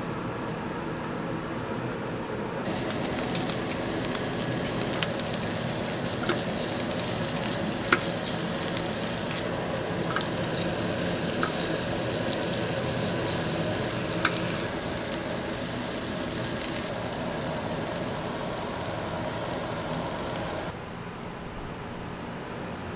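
Thick-cut pork belly sizzling on a barbecue grill, starting about three seconds in and running steadily, with a few sharp metallic clicks of tongs. It stops suddenly shortly before the end.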